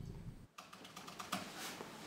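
Laptop keyboard being typed on: a few faint, scattered keystrokes.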